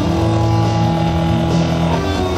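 Live rock band playing an instrumental passage on electric guitar and bass guitar, with notes held steady through most of it.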